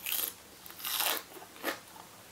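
Someone chewing crisp, fresh salad greens with their mouth near the microphone: three crunchy bites, at the start, about a second in and near the end.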